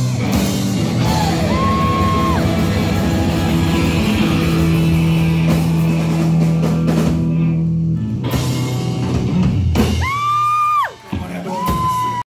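Live rock band playing loud: distorted electric guitars and a drum kit, with a chord held for several seconds mid-way. Near the end comes a high, held yell that drops off, and then a second, shorter one.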